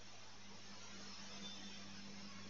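Faint steady low hum over a soft hiss: the recording's background noise in a pause between spoken sentences.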